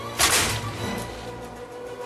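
A heavy-duty circuit breaker firing shut with one sharp, loud crack about a quarter second in, which fades quickly. Film music plays underneath.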